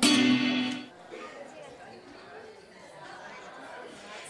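Nylon-string classical guitar: a loud strummed chord rings out at the start and dies away within about a second. People chatter quietly for the rest.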